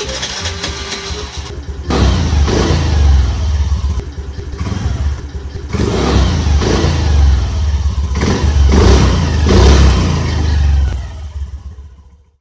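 Motor scooter engine started and revved repeatedly, in several rising and falling swells over a steady low running sound, fading away near the end.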